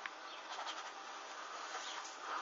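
Small flame burning the hem of hanging lace panties: a steady soft hiss with a few faint crackles.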